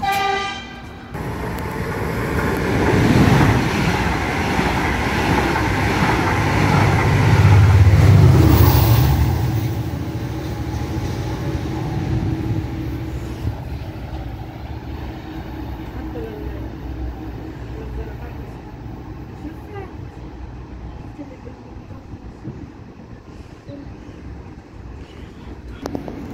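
A train horn gives one short blast, then an Israel Railways passenger train runs through the station: the rumble of wheels on rails builds to its loudest about eight seconds in, with a deep low rumble, then fades to a steadier, quieter rumble.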